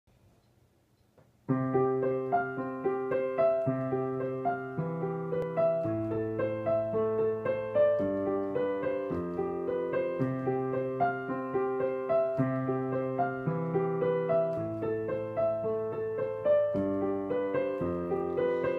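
Digital piano playing a solo introduction of slow, held chords over a changing bass note. It starts about a second and a half in after near silence.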